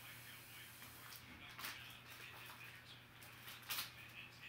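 Faint crinkling and rustling of a plastic trading-card pack wrapper as it is opened and the cards are slid out, with three or four short, sharp crinkles over a low steady hum.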